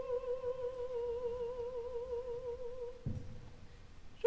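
A soprano voice holding one soft note with vibrato, fading away about three seconds in.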